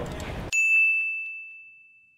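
A single bright bell-like ding sound effect, struck about half a second in after the background sound cuts off abruptly, ringing on one clear note and fading away over about a second and a half.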